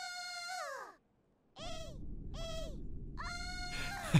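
A series of short, high-pitched squeaky vocal calls, each rising and then falling in pitch, about four in a row with short gaps between them. A faint low hum comes in about halfway through.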